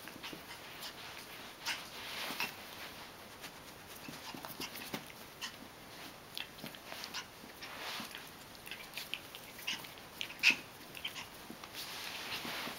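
A Prague Ratter puppy making many short, high-pitched vocal sounds while play-fighting with a person's hands, the loudest one about ten seconds in.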